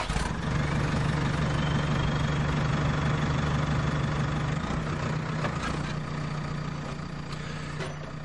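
A vehicle engine running steadily: a low, even drone that eases off slightly in level during the second half.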